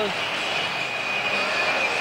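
Stadium crowd noise from a football match, a steady roar as heard on an old TV broadcast, with a thin steady high tone running under it.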